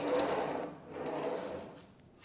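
Steel arm of an XYZ car-measuring column being moved by hand on its carriage: a mechanical rubbing sound that fades, swells again briefly about a second in, then dies away.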